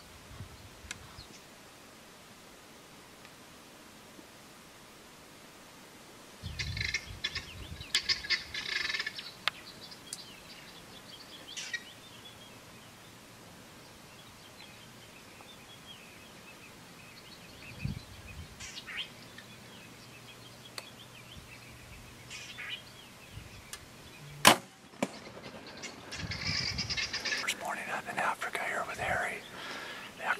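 Quiet waterhole with scattered bird calls, then a single sharp crack of a compound bow being shot, the loudest sound here, about two-thirds of the way through. Whispered talk follows near the end.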